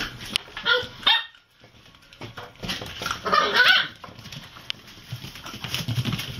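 Puppies barking in high calls: a short burst about a second in and a longer run of calls between about three and four seconds in.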